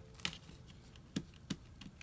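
A few faint, short taps and handling noises as hands work a sheet of paper, a strip of tape and a glue stick on a table.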